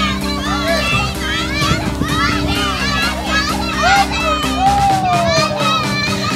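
Children's voices calling out and chattering during play, mixed with background music of steady held tones; the music's bass drops out about five seconds in.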